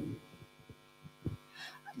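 Handheld microphone being passed between panellists: a few soft handling knocks over a steady faint electrical hum from the sound system.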